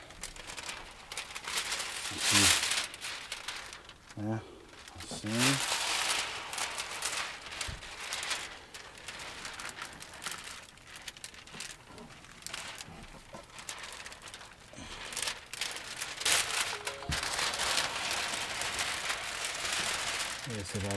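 Plastic window-tint film crinkling and rubbing against the wet windshield glass as it is handled and slid into place, in uneven stretches, with a few brief voice sounds.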